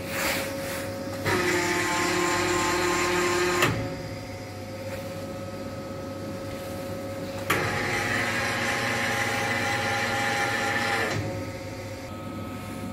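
Reishauer RZ 362A gear grinding machine running with a steady hum, while a motor-driven unit on it whines twice as buttons on its control panel are worked: once for about two and a half seconds, ending with a click, and again a few seconds later for about three and a half seconds at a higher pitch.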